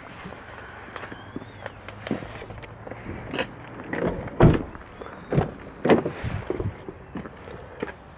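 Doors of a 2007 Toyota Land Cruiser being shut and opened, with several sharp knocks about halfway through, the loudest about four and a half seconds in, amid footsteps and rustling.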